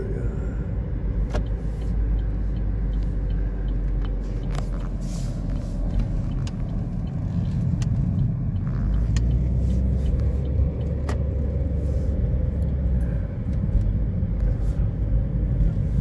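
Car being driven, heard from inside the cabin: a steady low rumble of engine and road noise, with a few light clicks.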